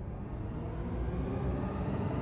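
A low rumbling noise, fading in and swelling steadily louder.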